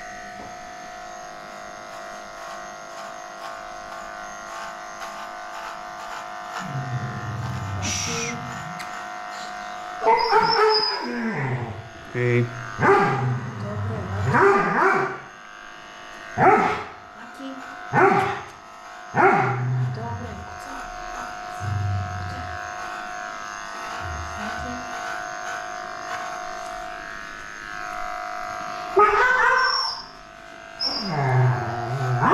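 Electric dog-grooming clipper running with a steady hum while an old, blind dog barks in a run of sharp, loud outbursts from about ten to twenty seconds in. The dog is reacting aggressively to being handled.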